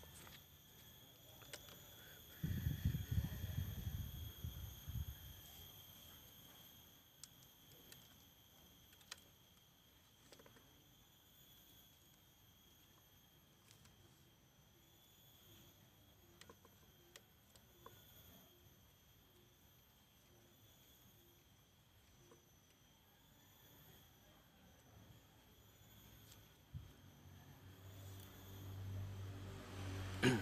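Quiet handling of thin bonsai wire being wrapped by hand around a small ficus branch: faint scattered clicks and rustles over a faint steady high hum. About two and a half seconds in, a low rumble lasts a couple of seconds and is the loudest sound.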